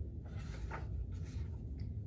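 A few faint rustles of a paperback picture book's pages being handled, over a steady low room hum.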